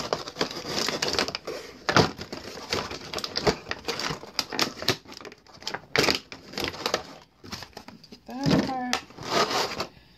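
Clear plastic packaging tray crackling and crinkling as it is handled and parts are pulled out of it, an irregular run of sharp crackles and clicks. A brief voiced hum is heard near the end.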